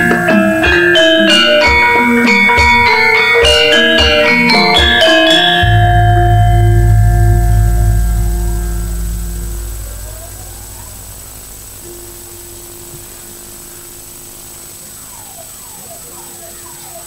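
Javanese gamelan playing a fast passage of struck bronze metallophone notes with kendang drum strokes, ending on a deep gong stroke about six seconds in that rings and fades over about four seconds. A quieter stretch follows, with faint held and sliding notes.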